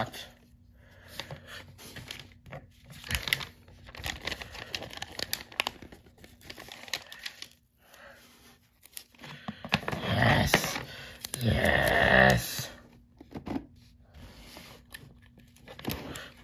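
Hands handling hard plastic toy track pieces and peeling a sticker from its backing: scattered clicks and light rustles, with two longer, louder rustling stretches about ten to twelve seconds in.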